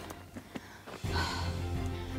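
Background music of steady held tones. It is quieter for the first second, then fuller with a low bass from about a second in.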